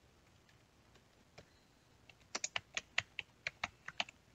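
Typing on a computer keyboard: a single keystroke a little over a second in, then a quick run of about a dozen keystrokes in the second half.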